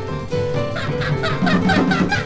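Jazz quartet playing: tenor saxophone, piano, double bass and drums. From about halfway, fast runs of short notes.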